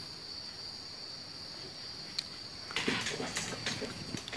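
Steady high-pitched trill of crickets in the background, with a single click about halfway through and a short spell of rustling and light knocks near the end.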